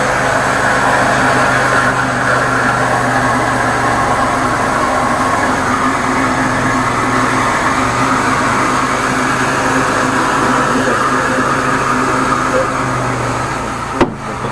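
High-pressure drain jetter running, driving water through the hose and nozzle into a blocked sewer drain line. It makes a loud, steady hum over a hiss that cuts off abruptly at the end.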